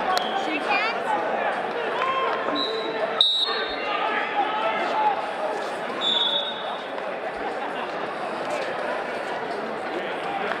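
Many voices talking and calling out across a large echoing sports hall. A short, high whistle blast comes about three seconds in, with a brief high tone just before it and another about six seconds in.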